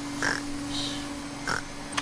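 A cartoon vacuum cleaner running with a steady hum, and over it a baby pig character making four short, soft snorts as he drops off to sleep.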